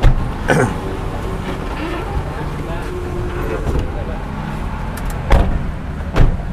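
Car engine idling with a steady low hum, with a few sharp knocks, one near the start and one near the end.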